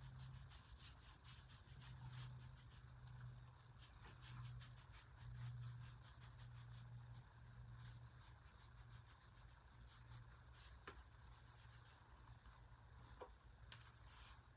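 Faint scratchy strokes of a nearly dry bristle paintbrush dragged back and forth across a painted wooden tabletop: drybrushing. The strokes come in quick runs, stopping for a moment about three seconds in and picking up again around five seconds, over a faint steady hum.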